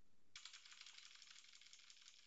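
Faint fast run of computer keyboard keystrokes, starting about a third of a second in, as text is deleted.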